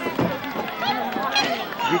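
Several spectators' voices talking over one another, with overlapping, mostly high-pitched chatter and no single clear speaker.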